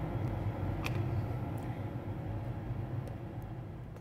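A steady low mechanical hum with a few faint clicks.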